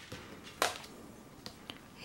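Quiet handling sound from hands on a cardboard album package: one short brushing swish about half a second in, then two faint ticks near the end.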